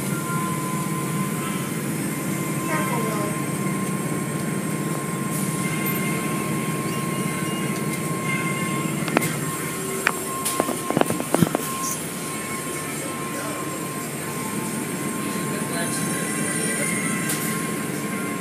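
Automatic car wash tunnel machinery running: a steady drone of motors and pumps with water spray and spinning cloth brushes, and a thin steady whine throughout. A quick cluster of sharp knocks about nine to eleven and a half seconds in.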